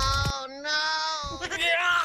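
A high-pitched, childlike singing voice holds two drawn-out notes, then sings a shorter wavering phrase near the end.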